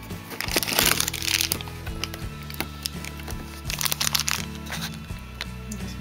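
Crinkling and cracking of a cardboard advent calendar being handled as a door is pried open, over steady background music. There is a loud burst of crackling about a second in and another around four seconds.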